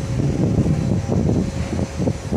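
Wind buffeting the microphone: an uneven low rumble with no distinct events.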